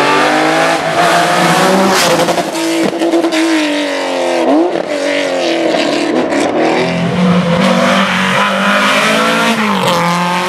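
Historic rally car engines at full throttle, the note climbing through the gears and dropping at each change. About halfway through there is a quick downshift with a throttle blip into a bend.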